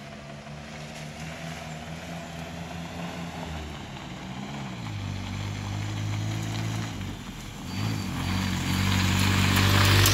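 A 1970 Land Rover Series IIA drives up a gravel lane toward the microphone and draws alongside, its engine growing steadily louder as it nears. The engine note shifts about halfway through and dips and climbs again near eight seconds, with tyre noise on the gravel rising at the close.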